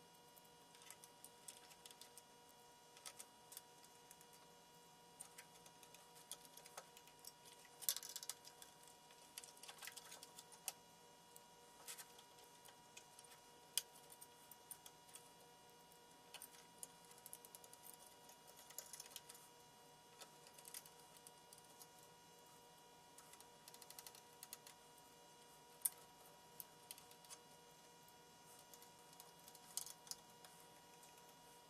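Faint, irregular small clicks and ticks of a screwdriver and screws working against the metal chassis and back panel of an audio interface as the screws are driven in, with a sharper click about eight seconds in. A faint steady hum sits underneath.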